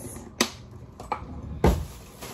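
Three hard knocks of ice against a container as the stuck ice is knocked loose: a sharp click, a softer tap, then a heavier thud near the end.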